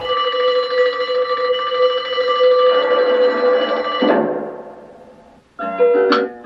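A fire-station alarm bell ringing steadily, one bright note with strong overtones held for about four seconds, then dying away. Plucked-string music starts just before the end.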